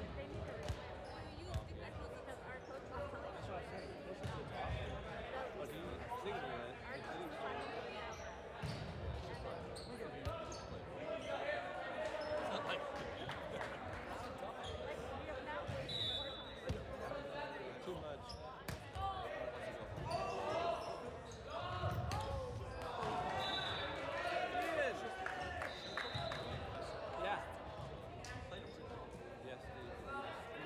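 Balls bouncing on a hardwood gym floor with indistinct players' voices and chatter, echoing in a large gymnasium.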